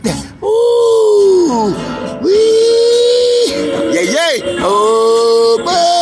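A voice singing long, drawn-out notes over music: several held notes, each a second or more, bending down at their ends, with a quick swoop up and down in the middle.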